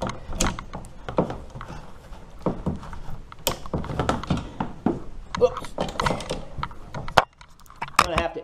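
Irregular knocks, taps and rattles of gear being handled against a plastic kayak hull, with a short quiet gap near the end.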